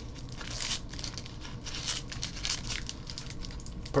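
Foil wrapper of a trading-card pack crinkling and tearing as it is pulled open by hand, in irregular crackles.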